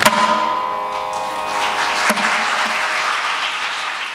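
A Carnatic group song ends on a last mridangam stroke, its held notes dying away over about the first second, followed by audience applause that fades near the end.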